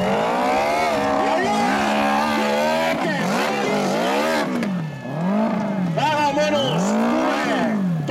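Off-road motorcycle engine revving hard as the bike claws up a steep dirt hill with its rear wheel spinning: held high for the first few seconds, then rising and falling in pitch about once a second as the throttle is worked on and off.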